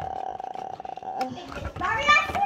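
A girl's long, strained "uhh" held on one pitch with a rough, rapidly pulsing quality for about a second and a half, followed near the end by rising voice sounds.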